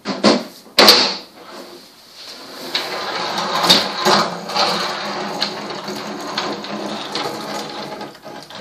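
Two sharp wooden knocks from a wooden kitchen trolley in the first second, then a steady rough rumbling noise with a few louder clatters for the rest.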